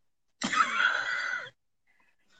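One short vocal outburst from a woman, lasting about a second, with dead silence on either side.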